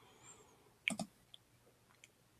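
A short double click about a second in, from a computer mouse advancing a presentation slide; otherwise a quiet room.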